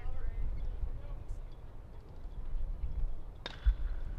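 A bat hitting a pitched baseball once, a sharp crack about three and a half seconds in, over a steady low background rumble.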